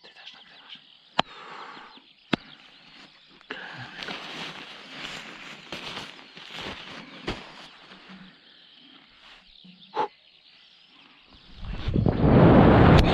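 Faint handling rustle with several sharp clicks as the jumper's gear is handled, then near the end a loud rush of wind on the microphone as he drops into freefall from the tower.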